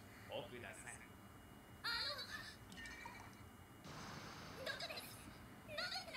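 Faint anime dialogue in Japanese, a few short spoken lines with pauses between them. One of the voices is a girl's.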